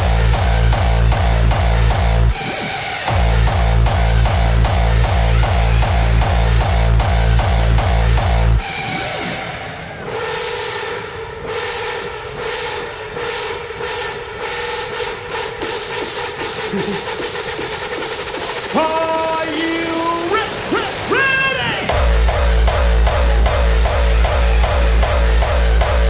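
Hardcore techno DJ set: a distorted kick drum pounds in a fast, even beat with synth stabs. After about eight seconds it drops out for a breakdown of held synth chords, with rising pitch sweeps building toward the end. The kick comes back in about four seconds before the end.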